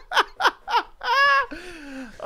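Men laughing: three short laugh bursts in the first second, then a longer drawn-out laugh.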